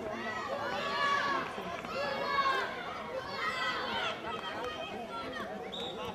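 Several high-pitched voices of children and adults calling and talking over one another at once, with a short high whistle blast near the end.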